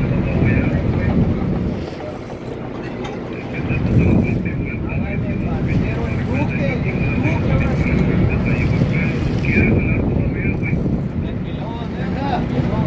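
Boat engine running steadily, with wind on the microphone and muffled voices of the crew; a faint high whine runs through most of it and stops near the end.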